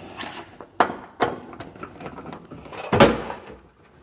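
A screwdriver turns the screws out of a sheet-metal breaker-panel cover, then the steel cover is knocked and pulled free. There are a few sharp metallic knocks, the loudest about three seconds in.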